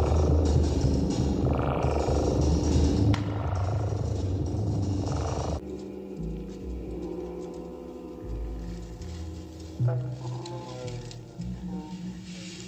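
Horror film soundtrack: a loud, dense low rumble for about the first half, which cuts off suddenly and gives way to quieter sustained music tones. Laughter comes near the end.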